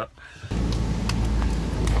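Outdoor street background noise: a steady low rumble with a haze of hiss that starts abruptly about half a second in, with a few faint clicks near a bicycle being handled.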